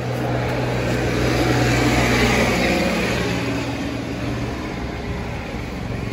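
A motor vehicle engine running, its sound swelling to a peak about two seconds in and then slowly fading.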